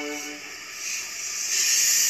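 Steam hissing from a pair of steam locomotives, an LMS 8F and an LMS Jubilee, coupled together as they set off, with steam blowing from the cylinder drain cocks. The hiss swells and is loudest from about a second and a half in, after a held tone dies away in the first half second. It is heard through a television's speaker.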